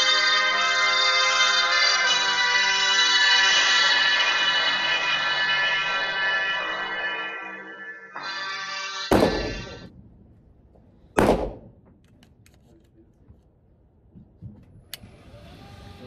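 Instrumental music for about the first nine seconds, then two loud shots from a Beretta 92 FS 9mm pistol about two seconds apart, each with a short echo from the indoor range. A few faint clicks follow near the end.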